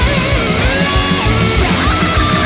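Heavy metal music: distorted electric guitars with a lead line that bends and glides in pitch, over a fast, regular drum beat.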